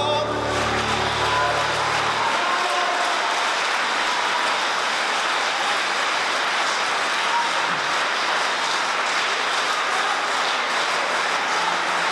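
A concert audience applauding steadily, with some voices calling out among the clapping. The last low piano chord of the song rings on under the applause for about the first two seconds and then dies away.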